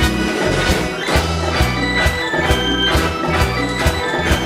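Live sixties-style pop band playing an instrumental passage: drums keep a steady beat of about two strokes a second under bass guitar and sustained organ-like keyboard chords.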